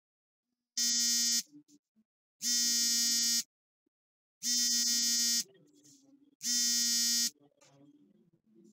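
Smartphone ringing for an incoming call: four steady, buzzy electronic tones of one pitch, each under a second long, with gaps of about a second between them.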